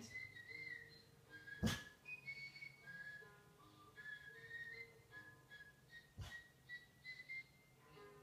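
Faint whistled melody from a television soundtrack, short notes moving up and down in pitch, with two soft knocks, one about a second and a half in and one about six seconds in.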